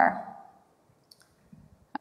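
A couple of faint computer-mouse clicks about a second in, with a spoken word trailing off at the start.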